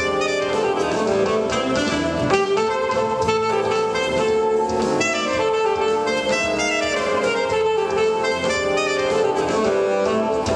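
Alto saxophone playing a jazz melody live, over accompaniment with a steady beat.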